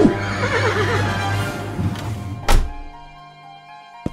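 A horse whinnying once, a quavering call about a second long, over background music. About two and a half seconds in comes a single loud thunk as the trailer's shutter window shuts.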